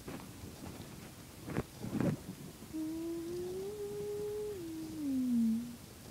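A couple of short handling knocks, then a woman humming for about three seconds: a single drawn-out tone that steps up, holds, and slides down at the end.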